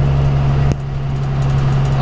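School bus engine running steadily while driving, heard from inside the cab as a low drone. A short click comes about three quarters of a second in, and after it the drone is slightly quieter.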